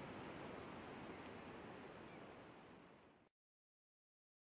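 Steady outdoor rushing noise that fades out over about three seconds and then cuts to silence.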